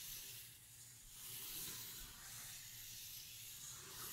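Felt-tip Sharpie marker drawing long strokes on paper: a faint, soft hissing scratch that swells and fades as each line is drawn.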